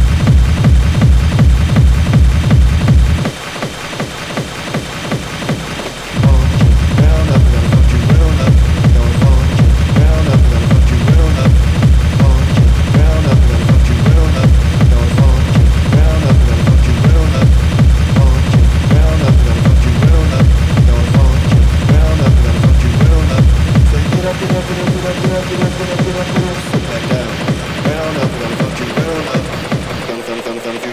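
Schranz (hard techno) DJ mix: a steady, fast kick drum under a driving electronic loop. The kick drops out for about three seconds near the start and returns, then cuts out again about six seconds before the end, leaving the higher synth loop playing alone.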